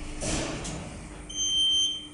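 Electric passenger lift running with a steady hum as the car approaches the landing. A short rush of noise comes near the start. Just past halfway, a single high electronic beep of about half a second sounds: the lift's arrival signal.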